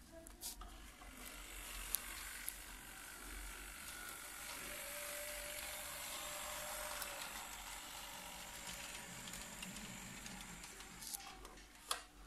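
Lima model D445 diesel locomotive pulling an Intercity coach along model railway track: a faint whir of its small electric motor and wheels on the rails. It grows louder toward the middle as the train comes closer, then eases off a little, with a few light clicks from the track.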